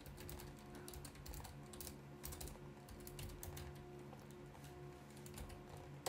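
Faint computer keyboard typing: irregular key clicks as a command is entered.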